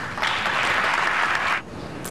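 Applause from the lawmakers in the House chamber, coming in just after the closing words of the vote announcement and dropping away about a second and a half in.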